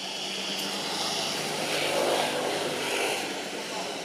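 A passing engine that grows louder to a peak about halfway through and then fades away.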